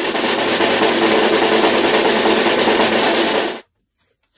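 Drum roll sound effect, a rapid, steady snare roll building suspense before a result is revealed, cut off abruptly about three and a half seconds in.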